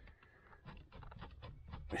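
Faint clicks and light rubbing of a plastic dashboard gauge being handled in its opening in a Volvo 240 dash, a quiet run of small taps starting about half a second in.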